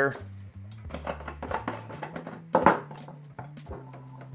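Background music, with a few light knocks and clatters as a siphon hose is fed into a plastic water can. The loudest knock comes about two and a half seconds in.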